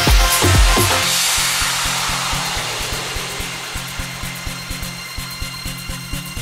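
House/techno dance music: the kick drum drops out about a second in, leaving a wash of noise that slowly fades over fast, steady hi-hat ticks and a low held tone, a breakdown in the track.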